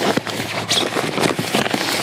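Crackling rustle of an inflated sleeping pad's nylon fabric being handled as a quilt strap is drawn around it, with many small irregular clicks.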